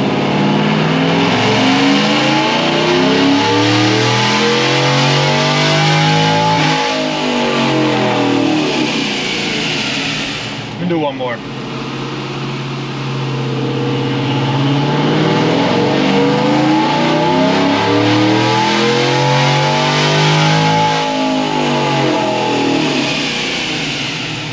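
Chevrolet Tahoe V8 with aftermarket headers at wide-open throttle on a chassis dyno, its engine note rising steadily in pitch through a pull. The rise comes twice, with a brief drop about eleven seconds in.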